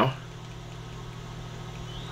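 A steady low hum with faint room noise, unchanging throughout, with no clicks or other events.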